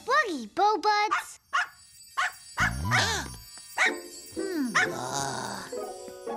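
Small cartoon poodle yapping: a string of short, high barks and yips that rise and fall in pitch, about ten in all.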